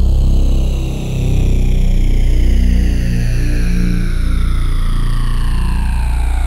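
Modal Electronics Cobalt8X virtual-analogue synthesizer playing sustained deep bass notes, with a sweeping modulation that falls slowly in pitch across the upper range. The sound dips briefly about a second in.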